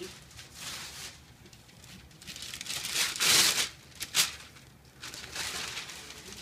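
Wrapping paper being ripped and crumpled off a large gift box in a series of tears, the loudest and longest a little after three seconds in, with a short sharp rip about a second later.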